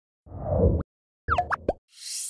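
Short electronic sound-logo effect: a low swelling whoosh, then a quick run of bright pitched pings and sweeps about a second and a half in.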